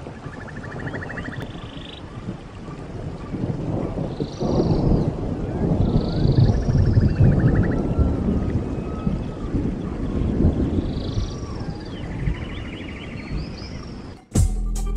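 Thunder rumbling and rolling, swelling about four seconds in. Short high calls and buzzy trills repeat over it, as in a storm sound effect.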